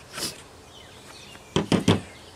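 A steel adjustable wrench set down on a table by a gloved hand: a few sharp knocks close together near the end, after a brief soft rustle about a quarter second in.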